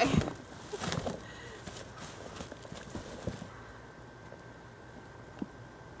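Black plastic trash bag rustling and crinkling as it is handled, loudest at the start and again about a second in, with scattered smaller crackles until about three seconds in.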